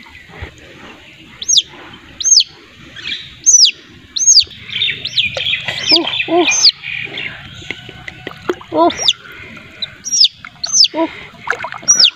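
A bird calling over and over: short, high chirps that rise and then fall, about one a second, with a few lower, voice-like calls among them.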